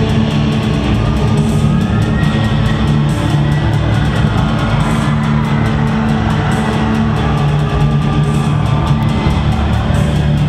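A gothic metal band playing live: bass guitar and guitars over drums, loud and steady.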